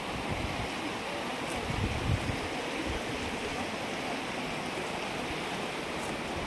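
A river running high and fast over rocks: a steady, even rush of water. A few low thumps come about two seconds in.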